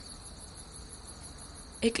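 Crickets trilling steadily in a high, continuous chirr.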